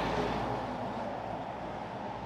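Articulated truck passing close by and driving away, its road noise slowly fading.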